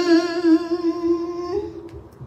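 A woman's voice holding one long, slightly wavering note of Khmer smot chant, hummed with closed lips, that fades out about three-quarters of the way in.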